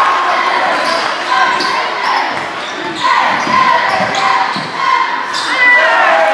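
Live basketball play in a gym: the ball bouncing on the hardwood court, sneakers squeaking in short high chirps, and crowd voices echoing in the hall.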